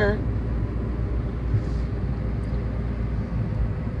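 Steady low rumble of a car's engine and tyres heard from inside the cabin while driving along a town road.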